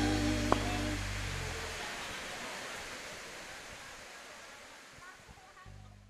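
A band's final chord ringing out, keyboard and bass notes held and dying away over about a second and a half, with a single sharp click about half a second in. It then fades to a faint hiss.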